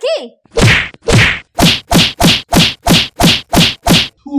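A run of about ten loud whacks, each with a short falling thud beneath it. They start about half a second in and speed up from about two to three a second.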